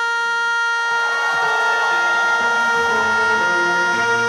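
A woman's singing voice holding one long, steady high note, with backing music coming in underneath about a second and a half in.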